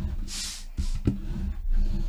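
Hand brayer rolling over cardstock on a fabric cutting mat, a low rolling rumble with small knocks and scuffs. A short soft hiss about half a second in.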